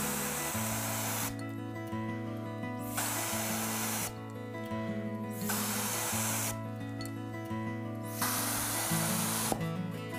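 Mouth atomizer spraying red watercolor onto paper: four hissing blasts of about a second each, two to three seconds apart, over background music.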